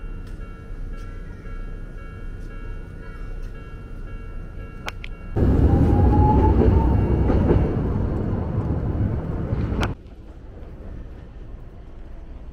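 Toden Arakawa Line tram passing close by at a level crossing: loud running rumble for about four seconds, with a thin electric motor whine rising in pitch as it gets under way, cut off suddenly near the end. Before it, street ambience with a few steady high tones.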